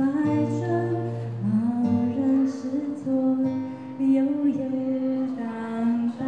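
A woman singing a slow song into a microphone, holding long notes, accompanied by acoustic guitar.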